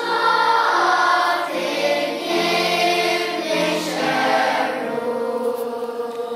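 Children's choir singing held notes, a new phrase coming in right at the start after a brief break.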